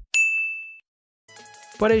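A single bright ding sound effect: one sharp strike with a clear high tone that rings out and fades in under a second. After a short silence, faint background music comes in.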